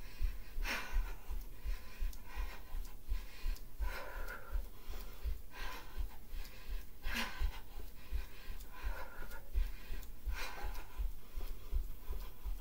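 A woman breathing hard while jogging in place, with a breathy exhale about every one and a half to two seconds. Under it her bare feet land on a carpeted floor in steady, even thuds.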